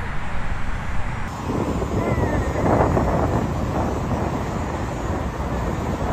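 Steady low outdoor rumble, with faint voices about halfway through.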